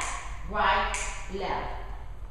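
A woman's voice speaking briefly, calling out dance steps, then a short pause.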